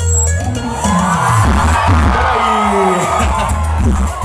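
Loud dance music with heavy bass played over a large party sound system, with a crowd's noise mixed in and a few sliding pitch effects in the middle.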